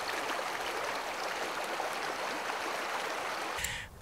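Shallow creek running steadily over rocks. The sound cuts off suddenly shortly before the end.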